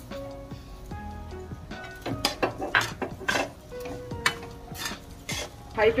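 A steel spatula scraping and clinking against a steel kadhai while sugar is stirred into roasted moong dal, with a handful of sharp scrapes in the second half.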